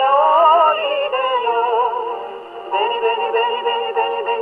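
A pre-war Japanese jazz song playing from a 78 rpm shellac record on an acoustic gramophone with a homemade soundbox. The sound is thin, with no deep bass or high treble. A wavering melody line rises over the band in the first second, the music thins out about two seconds in, and the full band comes back near three seconds.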